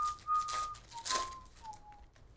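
A person whistling a short tune of a few held notes, the last one sliding down in pitch. Under it, two brief rustles of trading cards being handled.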